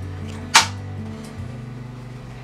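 A clapperboard snapped shut once, a single sharp clap about half a second in, over steady background music.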